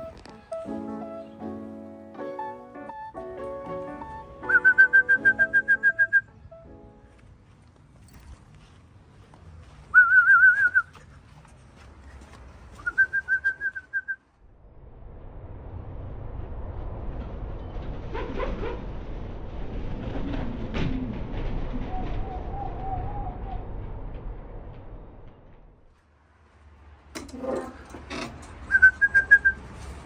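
A person whistling short calls, four times, to bring a returning racing pigeon down to the loft. Background music plays at the start, and a long swell of rushing noise rises and fades in the middle.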